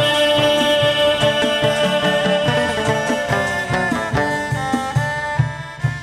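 Chầu văn ritual music: a Vietnamese ensemble of moon lute and drum playing an instrumental passage. Held notes sound over steady drum beats, and the playing thins to separate plucked notes in the last couple of seconds.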